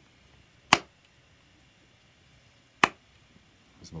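Two sharp hand claps about two seconds apart, made as sync marks for lining up separately recorded audio and video.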